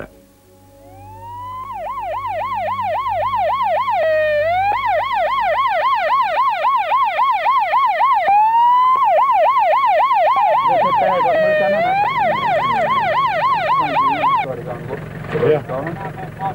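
Vehicle siren on a demining team's truck, sounded as a warning ahead of a controlled detonation of ordnance. It wails up, then warbles fast at about four cycles a second, and three times drops and sweeps back up before cutting off near the end. A low engine hum comes in under it in the later part.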